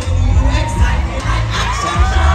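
Loud live music over a PA with heavy bass, and a crowd cheering and shouting close by.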